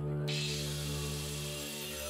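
An angle grinder working a wooden log, a steady hiss of the disc on the wood that comes in just after the start, under sustained background music.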